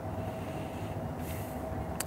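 Steady low outdoor background rumble with a faint steady hum, the open-air noise of a live street-side location.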